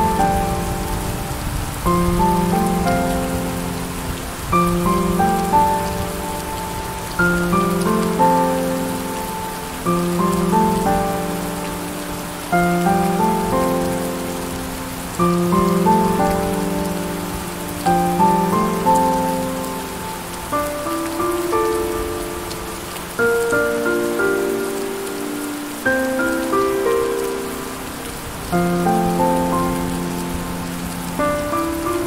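Steady rain falling, with slow piano music over it: a chord struck about every two and a half seconds, each ringing out and fading before the next.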